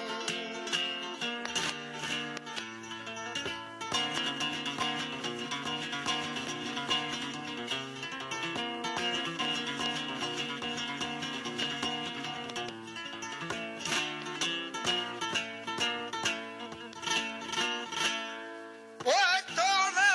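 Flamenco guitar playing an instrumental passage in bulerías por soleá, with struck chords and picked notes. A man's flamenco singing comes back in about a second before the end.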